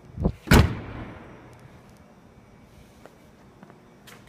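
The rear liftgate of a 2009 Hyundai Tucson being closed: a lighter knock, then a loud slam a fraction of a second later that rings out briefly.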